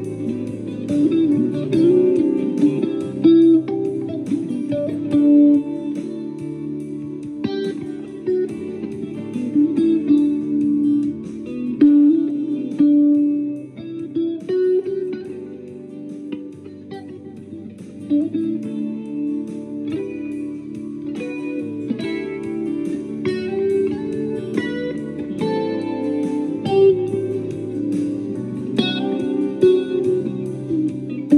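Squier Stratocaster electric guitar being played with a pick, a continuous run of picked notes and chords, with a softer passage about halfway through.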